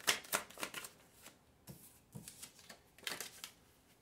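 Tarot cards being shuffled by hand: a quick run of card slaps, about four a second, through the first second, then a few scattered ones, with another short run about three seconds in.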